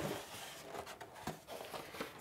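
Faint scraping and rustling of a styrofoam packing insert being lifted out of a cardboard box, with a couple of light knocks.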